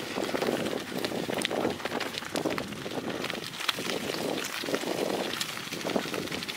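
Bicycle tyres rolling over a gravel forest track, with an uneven crunching of stones and many small clicks and rattles.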